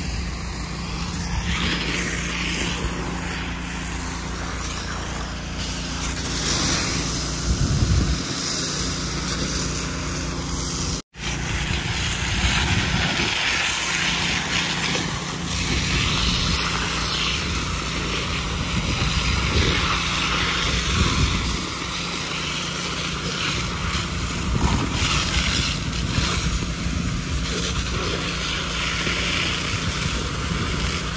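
A truck engine runs steadily under the hiss of a fire hose spraying water. The sound drops out briefly about eleven seconds in.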